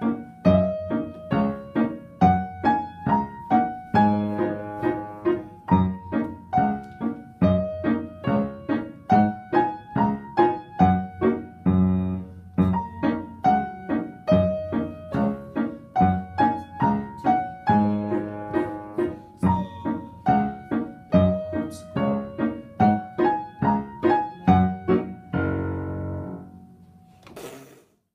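Upright piano played four hands as a duet: a lively piece with a steady beat of struck notes. It closes on a held chord that rings and fades out near the end.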